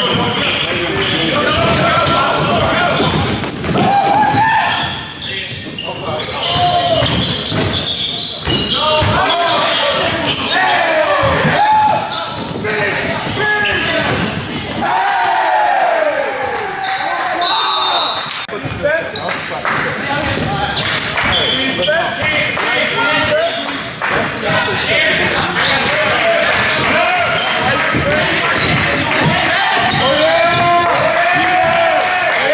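Live basketball play on a hardwood gym floor: the ball bouncing as it is dribbled, sneakers squeaking in short sliding chirps, and players' voices calling out, all in the echo of a large hall.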